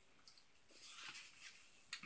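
Near silence: quiet room tone with a faint rustle about a second in and a small click near the end.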